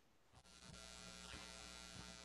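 Faint steady electrical buzz or hum, such as an open microphone picks up on a video call. It comes in about half a second in, after a moment of dead silence.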